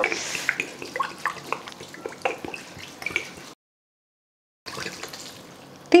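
Spirit poured from a glass bottle onto chopped dried fruit in a steel pot, trickling and dripping with many small irregular ticks. The sound cuts out completely for about a second midway, then comes back quieter.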